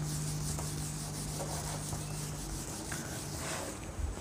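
A whiteboard eraser rubbing across a whiteboard, wiping off marker writing. A steady low hum runs underneath and stops a little past halfway.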